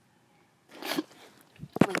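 A woman's short, stifled sneeze about a second in, from a sudden head cold, followed by a few sharp sounds as she starts to speak.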